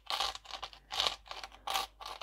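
Himalayan pink salt being ground over a salad: a salt grinder twisted in a run of short gritty grinds, about three a second.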